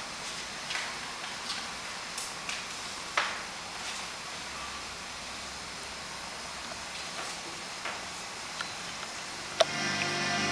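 Quiet hall room tone with scattered light taps, clicks and rustles as the performer moves about on the hard floor and handles a piece of paper, then one sharp click just before music starts at the very end.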